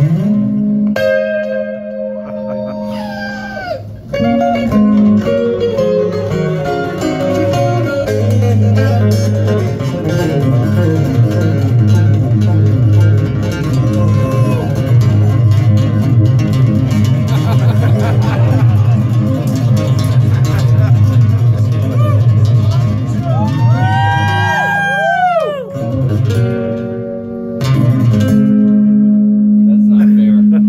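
Two acoustic guitars playing an instrumental duet live: held chords at first, then a long run of fast picked notes, and near the end a few notes that swoop up and down in pitch before held chords return.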